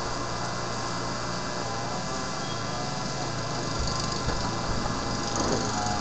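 Steady room noise, an even hum and hiss with no distinct events, rising slightly near the end.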